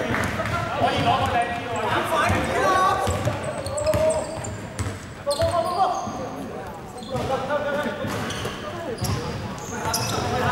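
Indoor basketball play in a large hall: the ball bouncing on the hardwood court, sneakers squeaking, and players calling out to each other.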